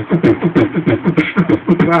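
Beatboxing: one man's vocal percussion in a quick, even rhythm of clicks and kick sounds, with a low hummed note running under it, carrying the rock beat between sung lines.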